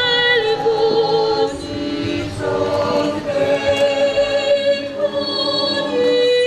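A choir singing a slow hymn in long, held notes.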